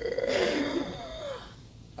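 A man laughing, a breathy laugh that trails off about halfway through.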